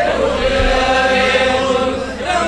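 A voice chanting in a drawn-out, melodic style, holding one long steady note.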